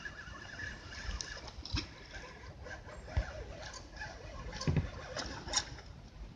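Quiet open-water ambience with a few faint, scattered knocks and clicks from plastic kayak hulls and fishing gear, and a faint steady high tone in the first couple of seconds.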